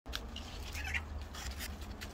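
Outdoor handling noise around a fig tree: a low rumble with faint rustling of leaves, and one short, faint animal call high in pitch about three-quarters of a second in.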